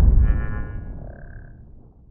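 Logo sting sound effect: a deep boom dying away over about two seconds, with a brief shimmering ring early on and a short bright chime about a second in.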